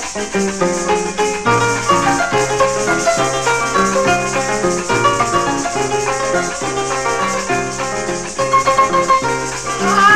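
Venezuelan llanero joropo music: a harp plays a quick plucked melody over a stepping low bass line, with maracas shaking steadily throughout.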